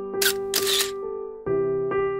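Intro jingle music with held chords that change twice, overlaid near the start by a two-part click sound effect, two short noisy clicks about half a second apart, timed to the animated pointer pressing a Subscribe button.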